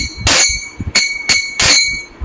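Kartals (small brass hand cymbals) struck in a steady kirtan rhythm, about three ringing clinks a second, with soft low beats underneath.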